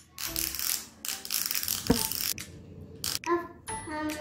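Small geared motor of a battery-powered toy fishing rod running in two short bursts, a ratcheting whirr, as the reel lets out its line.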